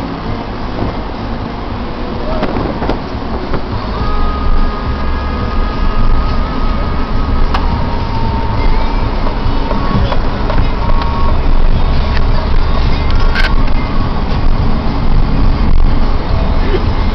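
Car being driven along a narrow country road, heard from inside: steady engine and road noise with a heavy low rumble, growing louder about four seconds in.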